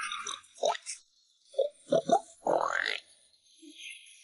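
Pig sound effect: a few short grunts about halfway through, then a longer call that rises in pitch.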